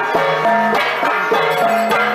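Traditional drum-and-gong music: a stick-beaten drum keeps a steady beat under the ringing of pitched metal gongs that change pitch every half second or so.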